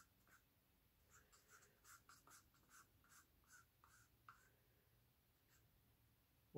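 Very faint, quick scraping strokes, about a dozen between one and four and a half seconds in: a wooden stick scraping acrylic paint out of a small paper cup.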